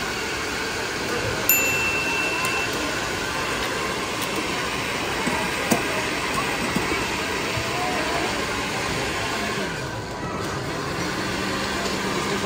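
Busy indoor stall ambience: a steady wash of background crowd chatter, with a few sharp clicks of bottles and equipment. A low steady hum comes in near the end.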